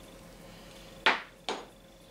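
Two short, sharp knocks about half a second apart, the first the louder, against quiet room noise.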